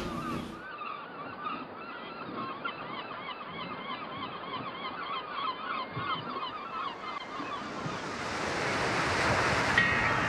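A flock of birds calling: many short, overlapping honking calls. The rush of waves grows louder over the last few seconds.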